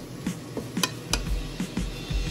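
Wooden spatula stirring and tossing noodles and vegetables in a nonstick frying pan, with a few sharp clicks as it knocks against the pan near the middle.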